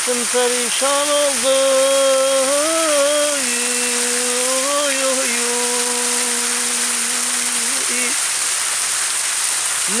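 A man singing a religious hymn (ilahi) in long held, wavering notes on wordless syllables, the last note held steady for about three seconds before it stops about two seconds from the end. Underneath, a fountain's water jet splashes with a steady rush.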